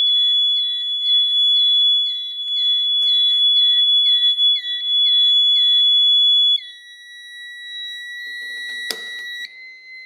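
System Sensor mini horn sounding a loud, steady high-pitched alarm tone, set off by a medical-alert pull cord, with a quick chirp repeating about two and a half times a second over it. About six and a half seconds in the alarm cuts off, leaving a much fainter steady tone, and a click comes near the end.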